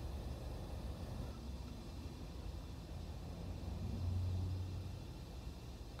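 Low, steady rumble of a car heard from inside the cabin, with a low hum that swells briefly about four seconds in.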